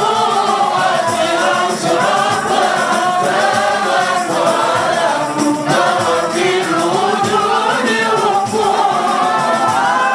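A group of men singing an unaccompanied Swahili qasida through microphones, voices together in a continuous melismatic line, in the Arabic maqam Sikah.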